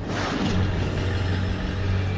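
A car engine sound effect under an animated logo: a steady engine note with a strong low hum that fades in just before and holds throughout.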